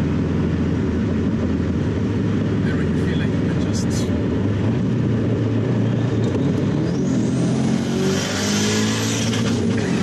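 Turbocharged Subaru WRX STi flat-four engine heard from inside the cabin while driving under throttle; about seven seconds in a high turbo whistle rises, followed by a loud hiss near the end.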